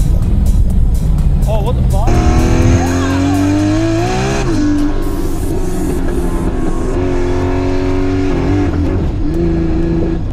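A steady low car-engine drone inside the cabin, with a music bed over it; a held, sliding melody comes in about two seconds in.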